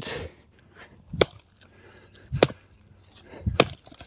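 Short-handled axe chopping into a crooked log laid on its side on a support log: three sharp strikes a little over a second apart, driving in from the side to split a piece that will not stand upright on the chopping block.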